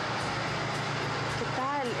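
Steady running noise of a vehicle on the road, an even hum and rush with no changes, with a voice starting near the end.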